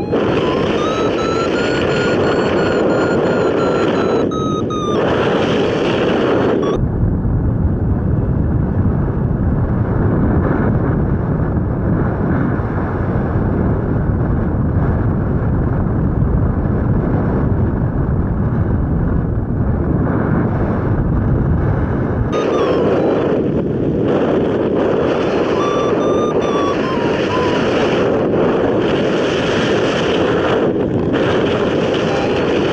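Air rushing over a hang glider in flight, heard as steady wind noise on the microphone, deeper and rumbling through the middle stretch. A thin whistling tone rises and falls over the first few seconds and returns briefly near the end.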